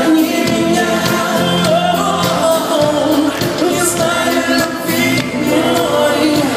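Live pop song by a male singer and band: lead vocal over drums, guitar and keyboards, recorded from the audience in a concert hall.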